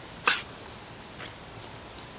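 A dog gives one short, sharp snort about a quarter second in, with a much fainter one about a second later.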